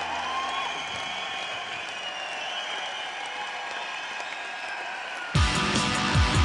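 Concert crowd noise, then a little over five seconds in a rock band comes in suddenly and loudly with drums and electric guitar.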